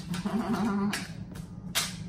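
A short, wavering vocal chuckle, then a couple of light clicks as small aluminium foil pie pans are set down on a stone counter, one about a second in and one near the end.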